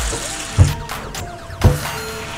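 Kitchen faucet running into a bowl in a stainless steel sink, under background music with steady held notes. Two low thumps, about a second apart, stand out as the loudest sounds.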